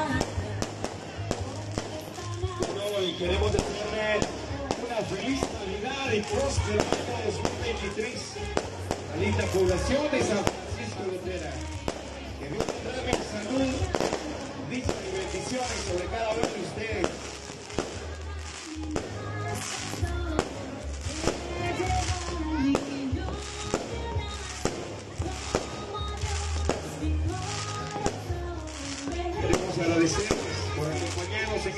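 Fireworks going off in a string of sharp bangs and crackles, coming thicker in the second half, over music with a pulsing bass beat and crowd voices.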